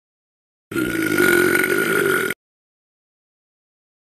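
One long burp sound effect, lasting about a second and a half and starting just under a second in, given to the cartoon piranha plant after it has swallowed its prey.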